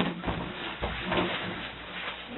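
Physical scuffle between two men in a small room: muffled thumps and shuffling of bodies against the table and floor, with a couple of heavier thuds in the first second and short strained grunts.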